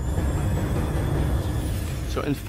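A deep, steady rumble with faint high whistling tones gliding in pitch above it: a sound-effect drone.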